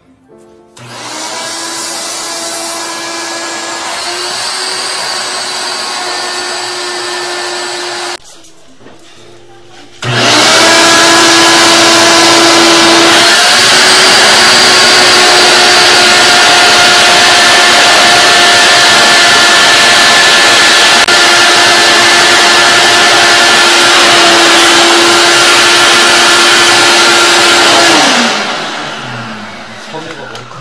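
RIDGID wet/dry shop vacuum running, a steady motor whine over a rush of air, used to suction out a blocked drain. It runs for about seven seconds and stops, then starts again louder with a rising whine, runs steadily for about eighteen seconds and winds down near the end.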